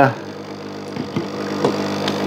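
A steady low electrical hum made of several even tones, with a couple of faint, brief small sounds partway through.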